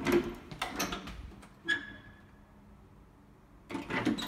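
Old wooden closet door being handled: a few knocks and latch clicks in the first two seconds, one of them leaving a brief ringing tone, then quiet.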